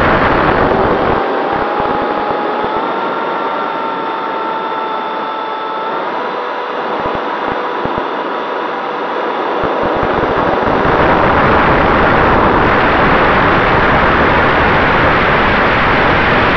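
Freewing F-86 Sabre electric-ducted-fan RC jet in flight, heard through a camera mounted on the airframe: a loud rush of air and fan noise. It eases off for several seconds in the middle, where a steady fan whine comes through and steps up in pitch about six seconds in, then grows loud again from about ten seconds.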